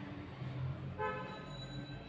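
A faint vehicle horn toots once, about halfway through, steady in pitch for just under a second.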